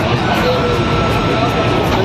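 Loud, steady running noise inside an Indian Railways sleeper coach on the move, a dense rumble with music faintly over it.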